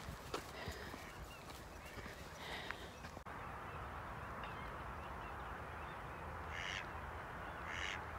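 Wild birds calling: faint chirping throughout, with two short, louder calls near the end. From about three seconds in, a steady faint hiss lies under the calls.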